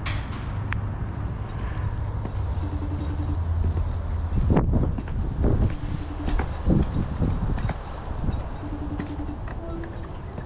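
Phone ringback tone coming faintly from a phone's speaker: a short low tone repeating three times, about three seconds apart, while the call rings through. Under it, a low rumble of wind on the microphone and a burst of knocks and rustles from the phone being handled near the middle.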